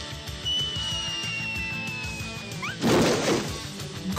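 Background music with a thin whistle slowly falling in pitch for about two seconds, then a crash about three seconds in: a comedy sound effect.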